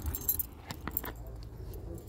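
Scattered faint clicks and clinks with some rustling while a fabric car seat cover is handled and tucked down.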